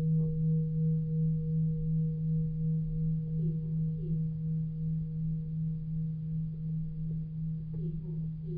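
A low sustained ringing tone with a weaker higher overtone. It wavers evenly in loudness two to three times a second and fades slowly.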